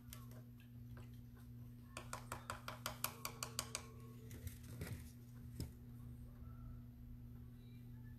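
A quick run of about a dozen light, hard clicks, about seven a second, then two single knocks: painting tools and a palette being handled on the table, as when a brush is tapped against a cup or palette. A low steady hum runs underneath.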